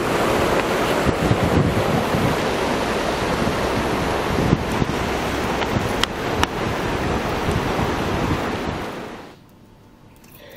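Wind buffeting the camera's microphone: a steady rushing noise with a fluctuating low rumble, with two brief clicks about six seconds in, cutting off about nine seconds in.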